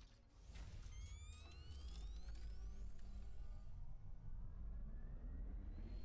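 Sound effects of an animated logo intro: a steady low rumble under several tones sweeping upward, with a few short hits.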